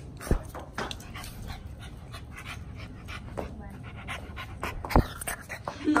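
A small dog panting close to the microphone in a quick, uneven run of breaths. A sharp knock comes just after the start and a louder one about five seconds in.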